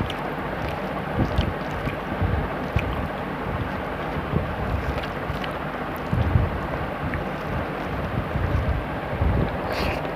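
Steady rushing wind noise on the microphone with irregular low buffets, over a few faint clicks from hand-mixing rice and curry and eating.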